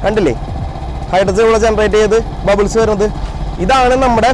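A man talking in Malayalam over a small motorcycle engine idling steadily underneath. The engine runs with a homemade water-electrolysis hydrogen generator switched on.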